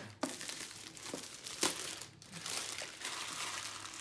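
Grey plastic mailer bag crinkling and tearing as it is pulled off a cardboard box and crumpled in the hand, with a few sharp snaps of the plastic, the loudest about a second and a half in.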